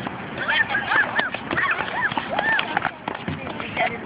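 Children's high-pitched voices calling out and chattering, with scattered knocks of tennis balls bouncing on a hard court.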